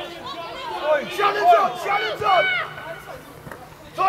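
High-pitched young voices shouting and calling out during play, several overlapping, loudest about a second and a half in and dying down near the end.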